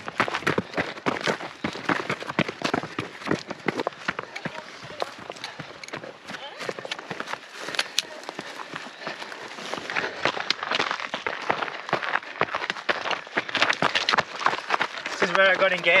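Footsteps of trail runners on a rocky dirt path, a quick irregular run of crunching steps and taps from trekking poles striking the ground. A man's voice comes in near the end.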